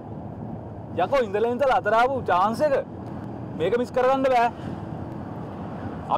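Dialogue spoken in two short bursts over the steady low hum of a van's cabin on the move.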